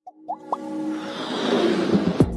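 Logo intro sting: two quick rising pops about a third and half a second in, then a swelling whoosh over sustained music tones that builds toward the end.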